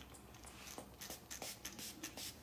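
Faint scratchy rubbing and clicking from hands handling a small plastic bottle of hair restorer, several short scrapes a second in the second half.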